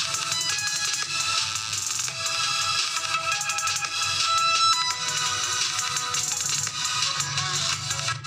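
Electronic dance music playing steadily and loud through the Itel A25 phone's single built-in loudspeaker, reading about 80–82 dB on a sound meter beside it.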